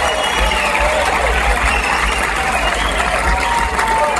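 Theatre audience cheering and applauding, with whistles gliding up and down above the noise.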